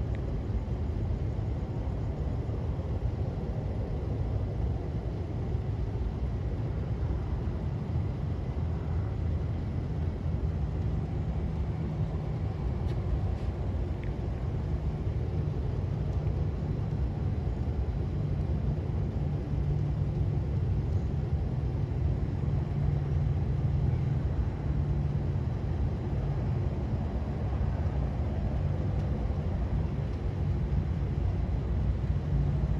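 A car engine running at idle: a steady low rumble.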